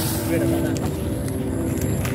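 Vietnamese kite flutes (sáo diều) sounding in the wind: several steady tones held together, over a low rumble of wind on the microphone.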